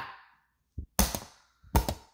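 Two sharp knocks of hard plastic about three-quarters of a second apart, with a softer tap just before the first; the first knock rings briefly. A plastic slotted spoon is being banged down in a pretend smash.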